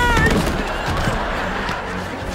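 A boy's held yell that breaks off just after the start as he is thrown, followed by a dense rough noise full of sharp cracks as he hits and slides along the floor.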